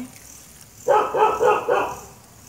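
A dog barking in a quick run of short barks, starting about a second in and lasting about a second.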